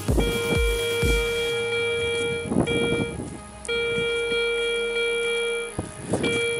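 Garrett Ace 250 metal detector with a NEL Tornado coil giving its steady target tone as a 1924 Soviet silver 20-kopek coin registers at about 33 cm. It sounds as several long beeps of one steady pitch, the longest about two seconds, with short breaks between.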